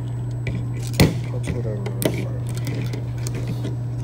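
Small metal clicks as a bit and socket are fitted into a Husky 15-in-1 multi-bit nut driver: a sharp click about a second in, a lighter one near two seconds and a few faint ticks, over a steady low hum.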